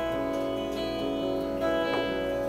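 Clean electric guitar ringing out the opening chords of a song, notes held and sustaining, with a new chord coming in about one and a half seconds in.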